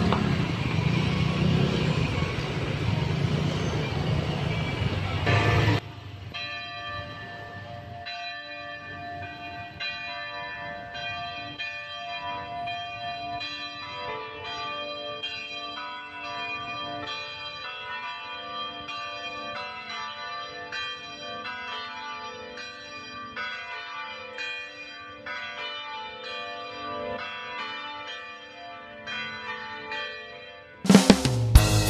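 Loud outdoor crowd and engine noise that cuts off abruptly about six seconds in, followed by church bells ringing a steady sequence of notes, each struck note ringing on as the next begins.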